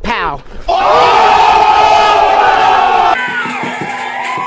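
A quick falling sweep of sound, then a man's long, loud yell held on one pitch over a shouting crowd, cut off abruptly about three seconds in.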